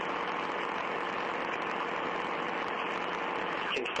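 Steady static hiss of the audio recording, an even noise at constant loudness with no speech in it. A voice starts right at the end.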